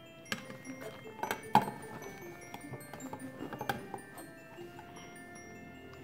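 Light background music of bell-like chime notes, with a few sharp knocks of the plastic jello mould against a plate, the loudest about a second and a half in.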